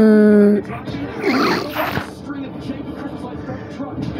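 A voice holding one long note that ends about half a second in, followed by brief indistinct voice sounds and a low, busy background.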